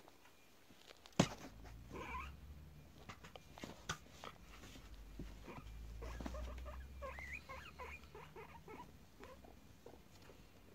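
A male guinea pig gives the low, steady rumbling purr of an excited guinea pig, with a few brief squeaks. There is one sharp click about a second in.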